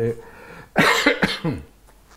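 A man coughs once, about a second in: a sudden burst that trails off into a short falling voiced sound.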